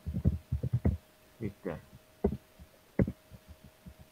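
Computer keyboard keystrokes heard over a video call: a quick run of dull taps in the first second, then scattered taps, with a faint steady tone underneath.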